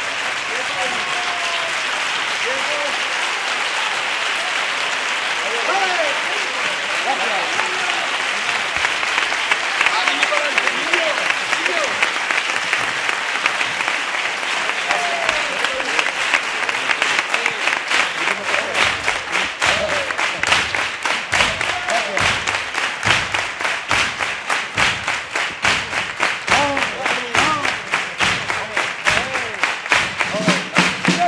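Large audience applauding, with scattered shouts from the crowd. In the last dozen seconds the clapping falls into a steady rhythm, clapped in unison.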